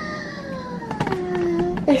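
A long, drawn-out whining vocal call that falls steadily in pitch for nearly two seconds, followed by a burst of laughter right at the end.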